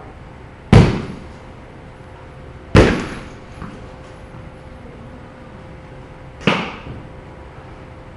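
A bat striking a softball three times, sharp cracks about two and four seconds apart, each with a short echo off the cage building; the first two are the loudest.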